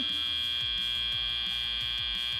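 Robotics-competition end-of-match buzzer sounding one steady, high electronic buzz: the match clock has run out.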